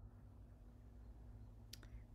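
Near silence: faint room tone with a low steady hum, and two brief faint clicks near the end.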